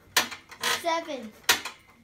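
Metal frame of a home pull-up power tower clinking sharply once per pull-up rep, two clinks about a second and a half apart.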